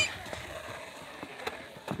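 A few faint, short knocks over a quiet outdoor background: a skater's shoes and skateboard being handled on a skate ramp's deck as he steps off and picks up the board.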